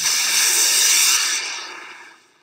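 Whooshing transition sound effect: a loud rush of hiss that starts suddenly, holds for about a second, then fades away.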